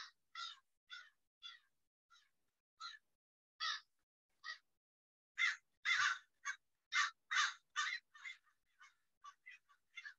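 Crows cawing in a series of short calls, sparse at first, then a louder, closer-spaced run of caws about halfway through, with quicker, fainter caws near the end.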